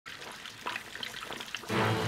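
Water trickling and splashing from an aquarium's airlift outflow onto the water surface. About three-quarters of the way through, louder music with a deep held low note comes in over it.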